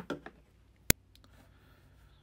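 Handling noise as a smartphone is picked up and held over a desk. A short knock at the start is followed about a second in by one sharp, loud click, the loudest sound here.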